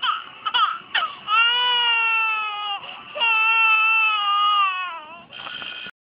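Animated toddler character crying on a TV-show soundtrack, played from a screen and recorded by phone: a few short sobs, then two long drawn-out wails, each sinking slightly in pitch as it ends.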